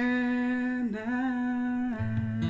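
A voice humming a long held note, breaking off briefly about a second in, then holding the same note again, with no instrument behind it.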